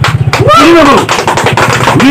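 A man speaking excitedly, opening with a short, rapid rattle of clicks.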